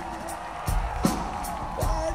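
Live rock band playing an instrumental passage of the song: sustained held notes with brief downward pitch bends over a steady drum beat with bass drum and cymbal hits.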